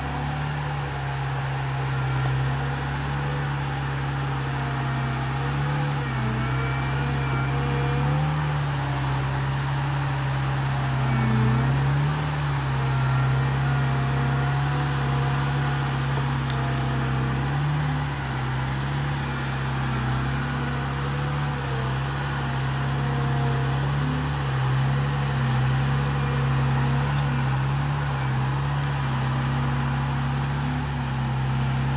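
Engine of a tracked eight-wheeled amphibious ATV running steadily at low speed, its pitch wavering slightly up and down as the machine crawls over logs.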